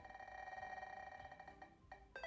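Spinning-wheel picker's ticking sound effect as the wheel turns: a faint, fast, even run of ticks that stops near the end.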